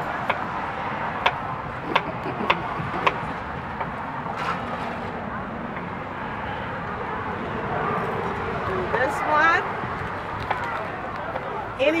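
Knife cutting jicama into chunks on a cutting board: about half a dozen sharp, irregular knocks of the blade on the board in the first few seconds, over a steady outdoor hiss.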